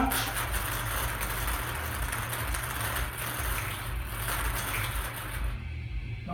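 Numbered balls tumbling and rattling in a hand-turned wire bingo cage as it is spun for a draw. The rattle is steady and stops near the end.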